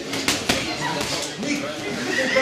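Boxing gloves landing punches: a quick run of sharp smacks in the first half second, over a steady background of crowd voices.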